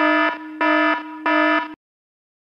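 Electronic buzzer sound: a harsh buzzing tone sounding in three pulses, about one and a half a second, and cutting off suddenly near the end.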